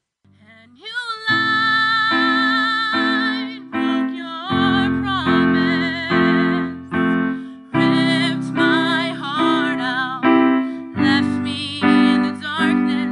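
A young woman singing with vibrato on long held notes while accompanying herself with sustained chords on a Casio digital keyboard. It starts after a brief silence with a rising sung note about a second in.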